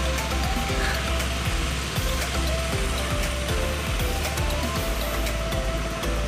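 Background music with a steady beat and held notes that change in pitch, over a low rumble.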